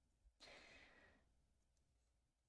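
Near silence, with one faint breathy exhale, a short soft sigh, about half a second in and lasting under a second.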